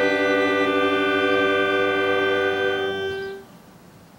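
Marching band's brass and woodwinds holding one long sustained chord, cutting off cleanly about three seconds in.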